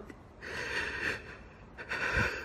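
A crying woman's sobbing breaths: one long breath drawn in about half a second in, then another starting near the end.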